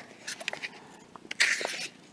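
Paperback picture book's page being turned by hand: a few soft clicks, then a short paper rustle in the second half.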